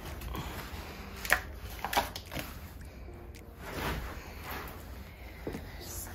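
Faint handling sounds from a clear plastic tub of granola treats being opened and sniffed: a few light clicks and rustles over a low background rumble.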